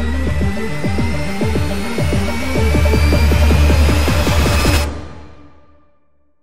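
Electronic background music with a heavy steady bass and a rapid run of short falling notes, fading out over the last second or so.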